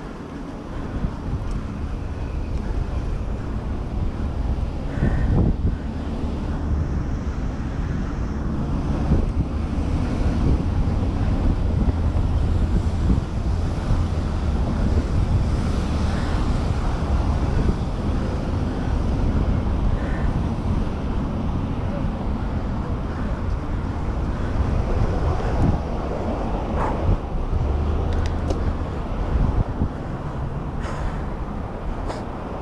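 Wind buffeting the microphone of a camera riding on a moving bicycle, a steady low rumble, with street traffic noise beneath.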